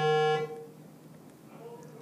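A person's voice holding one steady, flat-pitched drawn-out sound for about half a second, then trailing off into a faint hum.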